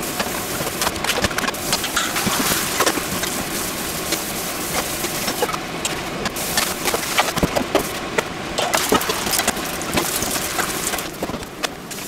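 Yakisoba noodles frying in a hot frying pan, a steady sizzle full of small crackles and pops.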